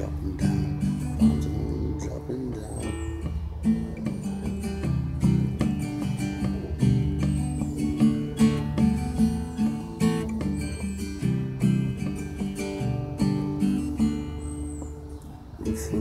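Acoustic guitar strummed steadily through an instrumental passage between verses of a slow song.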